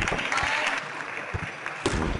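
Table tennis rally: sharp clicks of the celluloid ball striking bats and the table, the loudest near the end, over crowd noise and clapping in a sports hall.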